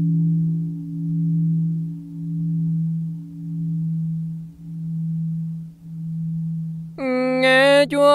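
Lingering hum of a struck Buddhist temple bell: one low tone that swells and fades in slow pulses about once a second, slowly dying away. About seven seconds in, a voice begins chanting the next verse over it.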